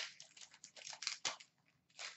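A hockey card pack wrapper being torn open by hand: a quick run of rustling and tearing noise that dies away about a second and a half in.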